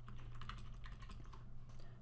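Faint, irregular clicking of computer input: keystrokes and clicks as an account is picked from a lookup list, over a low steady hum.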